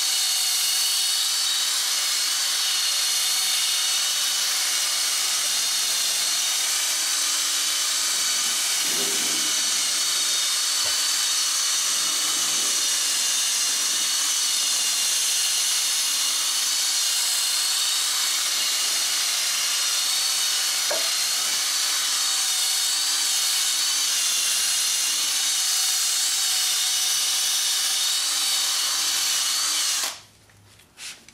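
Handheld power drill running steadily, spinning a foam Mothers PowerBall polishing ball against a plastic headlight lens: a high motor whine over a hiss, which stops at the end.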